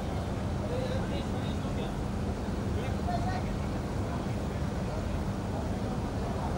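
Steady low hum and rumble of a crowded event space, with faint, scattered voices of the surrounding crowd now and then.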